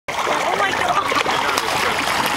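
Water splashing in shallow sea around people wading, with several voices talking throughout.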